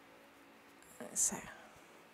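A brief soft whispered vocal sound with a sharp hiss, about a second in, over quiet room tone.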